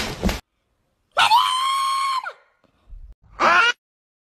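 A harsh, noisy screech cuts off about half a second in, followed by a loud high-pitched scream held steady for about a second that drops in pitch as it ends. A second, shorter scream comes near the end.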